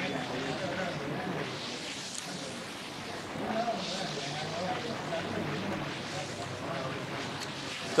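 Restaurant dining-room background: other diners' voices talking faintly over steady room noise.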